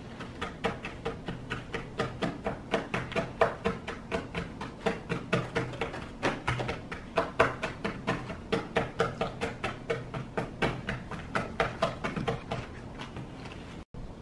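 Plastic spoons knocking and scraping against plastic cups and a bowl as an ice cream mixture is stirred and mashed: sharp clicks at about four to five a second, stopping shortly before the end.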